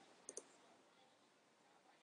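Two faint, quick clicks of a computer mouse button close together, about a third of a second in; otherwise near silence.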